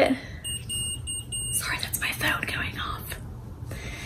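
A quick series of short, high electronic beeps, followed by soft breathy vocal sounds.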